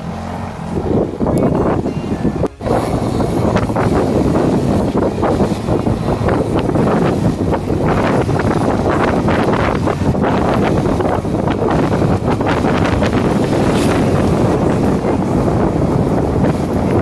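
Wind rushing over the microphone with continual rattling and knocking as a bicycle rides over a rough, rutted dirt track, with a brief drop about two and a half seconds in.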